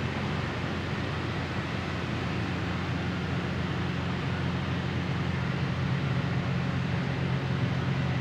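Steady low hum with an even rushing hiss over it, a constant machine-like background noise with no breaks.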